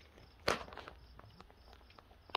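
Goat hooves knocking and scuffing on wooden deck boards: one sharp knock about half a second in, then a few lighter taps.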